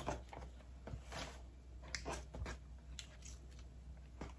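Faint rustling and crinkling of shred filler being pushed into a gift bag by hand, in a few short scattered rustles.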